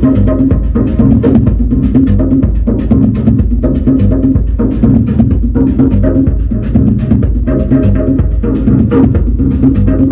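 Electronic music played live on a Eurorack modular synthesizer: a steady low bass line of repeating notes with busy percussive hits over it.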